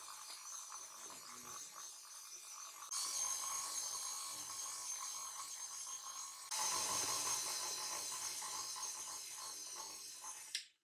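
Stand mixer motor running with a steady whine while its dough hook kneads bread dough in a glass bowl. It steps up in loudness about three seconds in and again past the halfway point.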